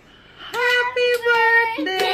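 A high voice singing long held notes, starting about half a second in after a brief quiet moment.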